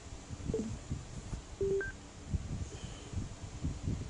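A handheld electronic device gives three or four short beeps at different pitches as it is operated, some low and some high. Under them run low, irregular rumbling knocks of handling noise.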